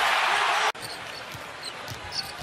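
Home arena crowd cheering loudly for a made three-pointer, cut off abruptly under a second in. A quieter arena follows, with a basketball bounced a couple of times on the hardwood court.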